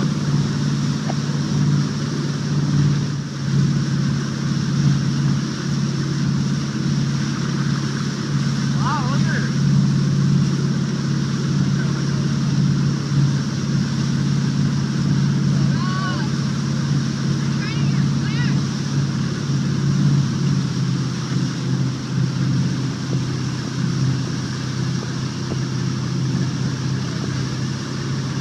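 Towboat's engine running steadily under way, a constant low drone, over the rushing water of the wake. A few brief, faint voices rise above it now and then.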